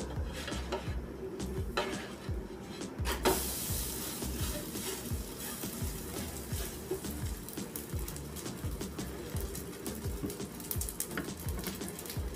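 Naan frying on a hot nonstick pan. A sizzle starts suddenly about three seconds in, when the bread is turned over and pressed down with a wooden spatula, and it keeps going under background music with a steady beat.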